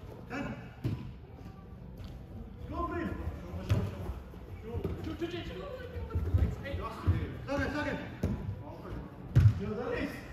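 A football being kicked on indoor artificial turf: a few sharp thuds, the loudest near the end, over players' voices calling out in an echoing hall.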